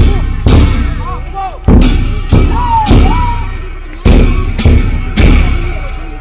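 A large drum beaten in a procession, heavy strokes about every half second to a second with a cymbal-like crash on each, each stroke ringing on before the next. Between the strokes a melody slides up and down in pitch.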